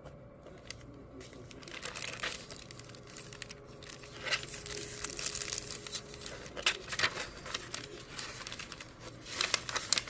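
Rustling and crinkling of stiff, crunchy coffee-dyed paper pages and a clear plastic sticker bag as a handmade junk journal is handled and leafed through. The handling noises are sparse for the first couple of seconds, then come thicker and louder toward the end.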